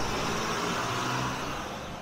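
A car passing on the road, its engine and tyre noise slowly fading away.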